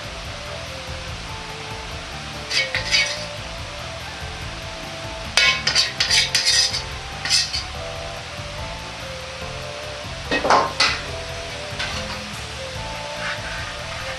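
Metal cookware and utensils clinking and scraping in a few short bouts, the loudest about five to seven seconds in, over steady background music.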